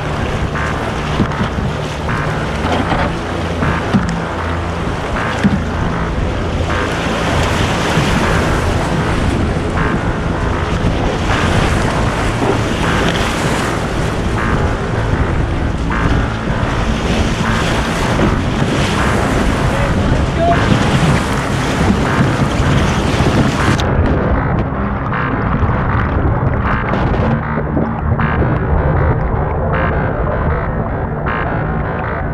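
Loud, steady rush of whitewater as a canoe runs a rapid, with wind on the microphone. About three-quarters of the way through, the sound suddenly turns muffled and dull as the canoe tips over and the camera goes underwater in the churning water.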